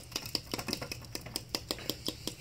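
Rapid, irregular clicking and ticking from a Python aquarium siphon tube working in the tank, several sharp clicks a second over a faint low hum.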